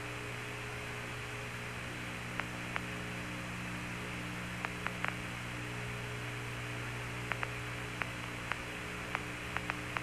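Open Apollo 15 air-to-ground radio channel with a steady hum and hiss. Scattered sharp clicks come at irregular intervals, more of them in the second half.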